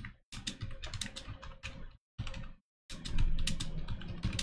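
Typing on a computer keyboard: quick runs of keystrokes broken by a few short pauses, as a search phrase is typed in.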